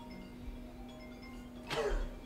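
Mobile phone ringing, its ringtone a melody of short marimba-like chiming notes. A brief voice sound cuts in near the end.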